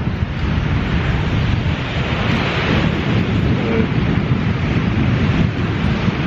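Wind buffeting the microphone over surf washing on an ocean beach, with a wave's hiss swelling about two to three seconds in.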